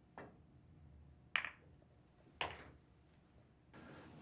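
A pool shot: a soft tap of the cue tip on the cue ball, then two sharp clicks of billiard balls striking, about a second apart.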